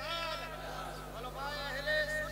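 A high-pitched, wavering voice, quieter than the main speech, rising and falling in pitch without words being made out.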